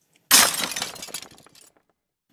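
Glass shattering: one sudden crash about a third of a second in, followed by tinkling fragments that die away over about a second.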